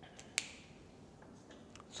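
A single sharp click about a third of a second in, over faint room tone with a few softer ticks and rustles.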